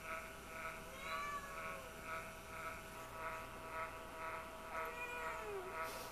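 Russian Blue cat meowing twice: a short call about a second in, and a longer call that falls in pitch near the end.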